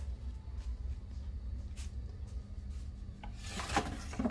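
Light rubbing and a few soft clicks over a steady low rumble and faint hum, typical of a handheld phone being moved as it films. A brief rush of noise comes near the end.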